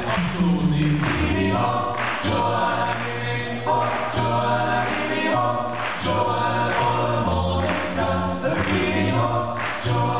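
Male a cappella vocal ensemble singing in close harmony through microphones, a deep bass voice holding the low line beneath the moving upper parts.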